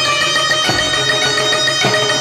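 Roland XPS-10 electronic keyboard playing an instrumental passage of long held notes, with two low drum strokes about a second apart.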